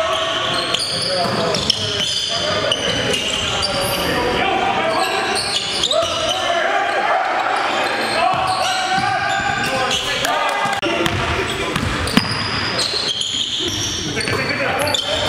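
Sound of a basketball game in a gymnasium: players' voices and calls overlapping throughout, with the ball bouncing on the hardwood court and scattered sharp knocks.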